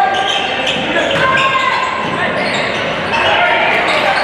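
A basketball dribbled on a hardwood gym floor, with shouting voices over a steady crowd din, all echoing in the large gym.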